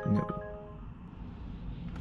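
A smartphone delivery app's chime: several bell-like notes struck in quick succession ring out and fade over the first half-second, over a steady low hum in the car cabin.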